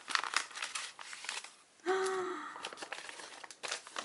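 Brown paper envelope being torn open by hand, the paper crinkling and tearing in short irregular rustles, with a brief hum from a voice about two seconds in.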